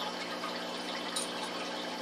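Small aquarium filter running: steady water trickle and splash with a low motor hum.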